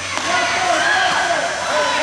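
Spectators' voices calling and talking in an ice rink, with a single short knock near the start.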